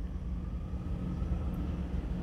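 Steady low rumble of background noise with a faint constant hum.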